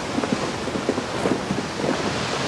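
Wind and sea surf on an exposed coast: a steady rushing noise.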